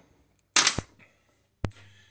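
Loose steel bolts dropped into a container: a short clatter about half a second in, then one sharp knock about a second later.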